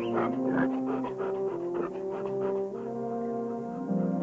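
Background score of slow, held brass notes, moving from one pitch to the next every second or so.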